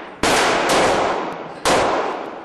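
Gunshots in an indoor shooting range: two loud shots about a second and a half apart with a fainter one between, each ringing on in the range's echo.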